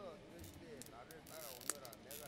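Faint hall noise of a large seated audience: scattered small clicks, a brief rustle, and faint distant voices, with one sharper click near the end.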